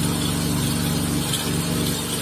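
An engine running steadily at a constant speed, a low even drone.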